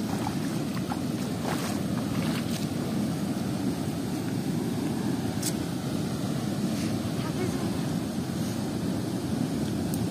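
Steady rush of river water pouring through a sluice gate in a strong current, an even low noise with no change.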